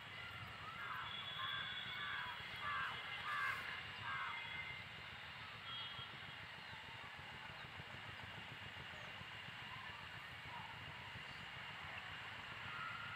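A bird calling: a run of about six short calls in quick succession from about one to four seconds in, then only a steady background hiss and low rumble.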